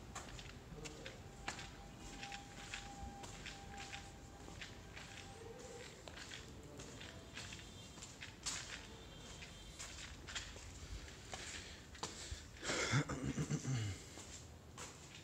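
Footsteps on stone paths and steps, heard as scattered light clicks and scuffs. A brief louder burst comes near the end.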